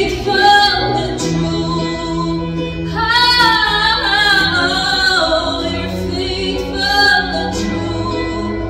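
A woman sings ad-lib worship phrases into a microphone over sustained keyboard chords. Her held, wavering notes peak from about three to five seconds in, with shorter phrases near the start and near the end.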